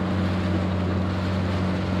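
A boat motor running steadily, an even low hum with wind and water hiss over it.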